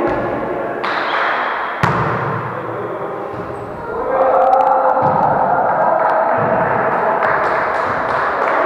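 A volleyball being struck in an echoing gym hall: sharp smacks of the ball in the first two seconds, with players' voices, which get louder about halfway through.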